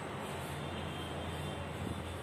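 A steady low mechanical hum with a constant background noise.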